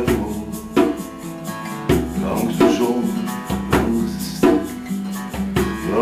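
Acoustic guitar strummed in a steady rhythm, ringing chords in an instrumental passage between sung lines of a song.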